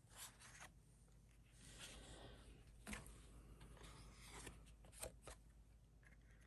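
Near silence with faint rubbing and a few soft clicks: a cardstock card being pressed down onto a gel printing plate by hand and peeled off.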